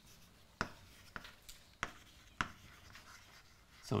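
Chalk writing on a chalkboard: a handful of sharp, irregularly spaced taps and short scrapes as the chalk strikes and drags across the board, mostly in the first two and a half seconds.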